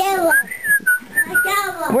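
Whistling: one thin, wavering whistled tone lasting about a second, set between short high-pitched voice sounds at the start and near the end.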